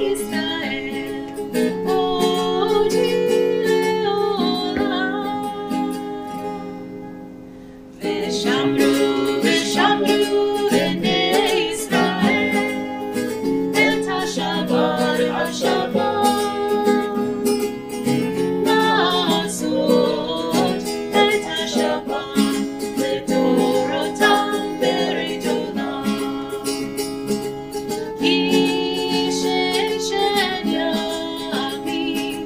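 Acoustic guitar strummed to accompany a song, with a voice singing the melody. About six seconds in, the playing fades out, and about eight seconds in it starts again at full strength.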